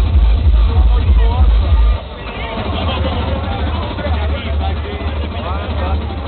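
Hard-dance music over a festival sound system with a pounding bass kick. About two seconds in the kick drops out, leaving a quieter bass line under many voices shouting and calling out.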